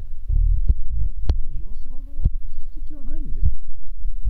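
A man's voice making a few short, indistinct vocal sounds over a loud, low rumble, with several sharp clicks scattered through.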